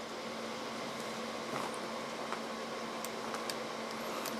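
Steady low hiss with a few faint, short clicks from the radio being handled.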